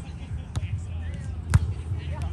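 A volleyball being hit by a player. There is a fainter contact about half a second in, then a sharp, loud smack about a second and a half in.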